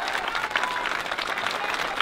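A large crowd applauding, a dense, steady patter of many hands clapping.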